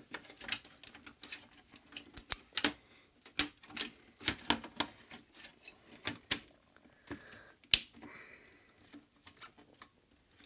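Irregular clicks and light knocks as the Amiga 600's circuit board is handled and seated into its plastic bottom case, the sharpest click about three-quarters of the way through.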